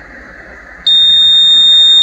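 The project board's alarm buzzer starts about a second in with a loud, steady, high-pitched tone. It signals that no finger has been detected on the fingerprint scanner while it is scanning.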